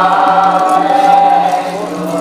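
Voices singing a devotional bhaona chant together in long, held notes over a steady low drone.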